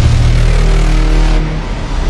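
Loud cinematic intro sound effect: a dense, steady rush of noise over a deep bass rumble.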